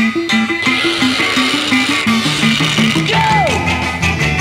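Instrumental passage of a 1960s garage rock song: a bass line stepping up and down under electric guitar and drums, with cymbals washing in about a second in. Near the end a single note slides down in pitch.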